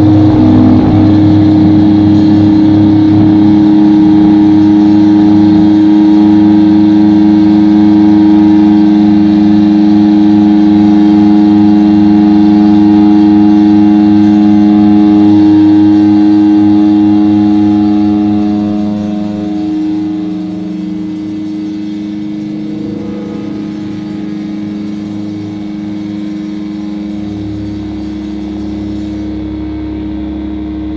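Live doom metal band's distorted electric guitars and bass holding a loud droning chord. It fades about two-thirds of the way through to a quieter sustained drone.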